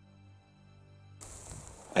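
Quiet background music of long held tones, fading, cut off just past halfway by outdoor field sound, a steady hiss. A man's voice starts right at the end.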